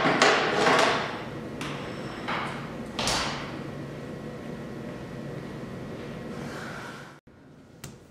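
A studio door opened and swinging shut: a few sudden clunks and rattles, loudest in the first second and again about three seconds in, over a steady room hum. The sound drops off abruptly about seven seconds in.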